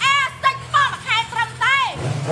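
A woman's high-pitched shouting voice in several short, swooping calls, over the low steady hum of a motorcycle engine idling.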